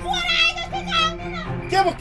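A high-pitched voice, rising and falling quickly, over background music with a steady low drone.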